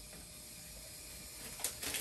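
Faint steady room noise, then a few light clicks and rustles of plastic suction tubing and its connector being handled about one and a half seconds in.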